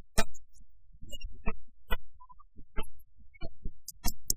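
Pipa plucked alone in a short instrumental interlude between sung lines of Suzhou tanci, sharp separate notes at an uneven pace.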